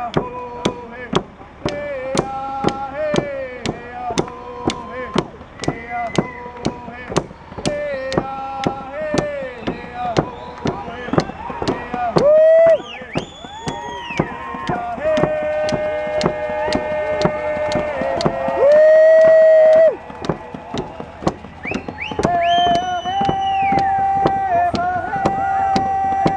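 Hand drums beaten in a steady beat, about two strokes a second, under group singing with long held notes, with two loud sustained cries near the middle and about two-thirds through.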